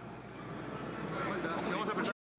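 Team talk in a timeout huddle: the coach and players talking, picked up faintly by a pitch-side microphone, over crowd and venue background noise.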